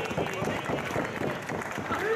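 Wrestling crowd at ringside, several voices shouting and talking over one another.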